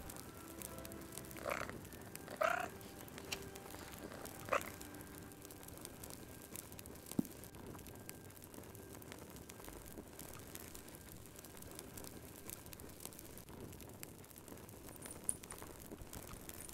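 A frog croaking three times in the first five seconds, over the faint, steady crackle of a wood fire.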